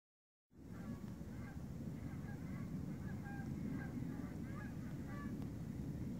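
A flock of geese honking overhead, many short calls overlapping, over a steady low rumble. The sound starts suddenly about half a second in.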